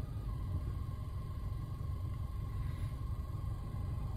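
Steady low rumble inside a car cabin, with a faint thin steady tone above it.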